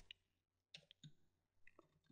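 Near silence broken by four or five faint clicks of computer keyboard keys being typed.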